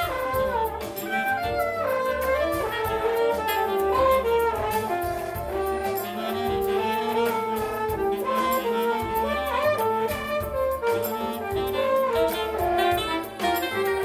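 Saxophone playing a jazz melody over a backing track with a steady bass line and drums.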